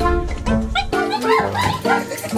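Upbeat background music, over which a woman gives a few short, high startled cries as she is frightened by a fake centipede and rat in the fridge.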